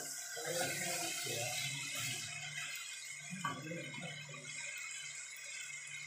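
Mutton pieces frying in oil and masala in a pot, sizzling as they are stirred with a spatula; the sizzle is loudest in the first two seconds and then fades. A faint steady low hum runs underneath.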